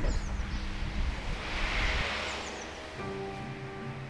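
Roadside ambience: a low rumble and a rush that swells and fades, as of a vehicle passing, with a few short high chirps of birds. Music with sustained notes comes in about three seconds in.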